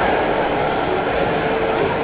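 Steady, even din of a busy amusement pier, with rides running and crowd noise blended together and no single distinct event.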